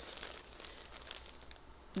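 Plastic bag of cotton balls crinkling faintly as it is held up and moved about, loudest in a brief rustle right at the start.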